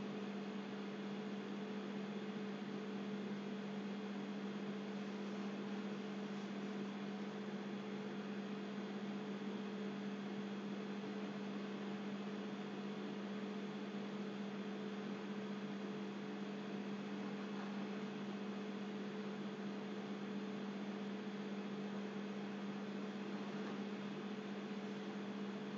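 Steady electrical hum with a constant hiss beneath it, unchanging throughout.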